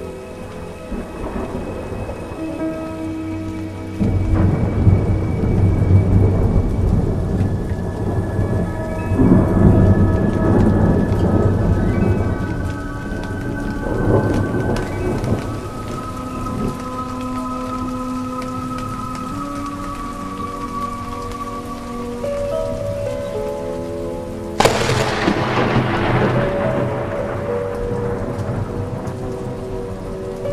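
Thunderstorm: steady rain with several rolls of thunder, the first starting suddenly about four seconds in, and a sharp thunderclap that rolls away near the end. Soft ambient music with slowly changing held notes plays underneath.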